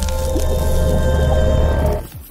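Logo intro music sting: a heavy, steady bass under held tones and a dense hissing, splash-like layer.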